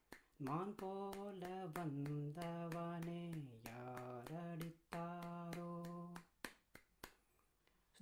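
A man singing a slow Tamil song melody unaccompanied while clapping his hands steadily on the beat in 6/8 time. The singing stops about six seconds in, and a few more claps follow.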